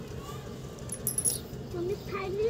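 Quiet handling sounds with a brief light jingle about a second in, as the planter and scissors are handled. A voice starts faintly near the end.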